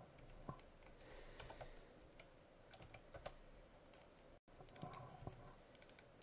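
Faint, scattered clicks of a computer keyboard and mouse, barely above near silence.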